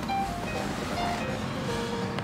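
Faint music with a few short held notes at changing pitches, over a low steady hum.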